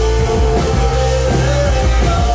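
Live rock band playing: held sung notes over electric bass, electric guitar and drums with evenly spaced cymbal hits.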